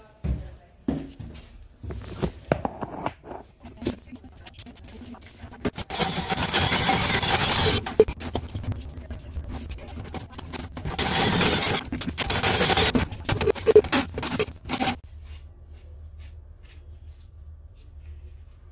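A cordless drill spins a drum auger's cable in a shower drain. It runs in two loud stretches, about six seconds in for two seconds and again about eleven seconds in for some four seconds, then stops. Before that come scattered clicks and knocks of handling the tools.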